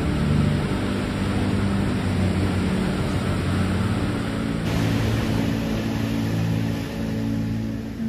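Ocean surf washing in a steady noisy rush, with soft background music held underneath.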